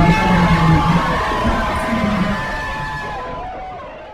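Live concert audio: music playing over a cheering crowd, fading out steadily.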